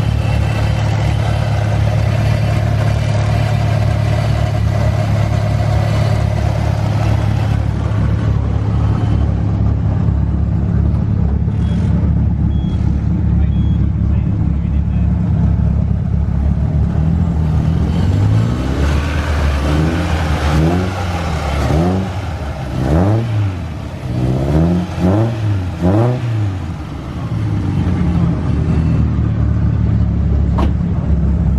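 Peugeot 206 GTi race car's four-cylinder engine idling steadily, then blipped in a run of about seven quick revs in the second half before dropping back to idle.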